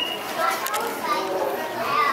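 Overlapping, indistinct chatter of many people, children's voices among them.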